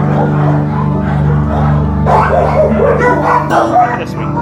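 Background music with sustained low notes; from about two seconds in, dogs bark and yip over it.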